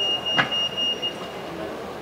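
A steady high-pitched electronic tone, like a buzzer or alarm, that stops a little over a second in, over the low background noise of a city street.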